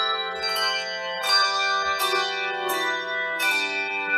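Handbell choir playing: groups of bells struck together about once a second, each chord ringing on under the next.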